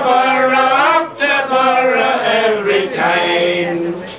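A man singing unaccompanied, in long held notes that step slowly from pitch to pitch: the closing line of a ballad's chorus.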